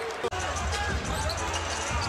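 Basketball arena game sound: crowd murmur with a basketball being dribbled on the hardwood court. There is a brief drop in level about a third of a second in.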